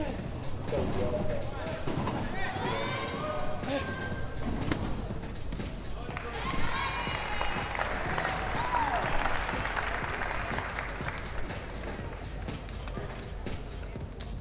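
Sports arena ambience: music over the PA with indistinct voices and scattered knocks and clicks.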